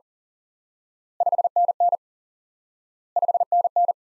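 Morse code tone sending '5NN' at 40 words per minute, twice: each time five short dits for '5', then two dah-dit pairs for 'N N', the groups about two seconds apart.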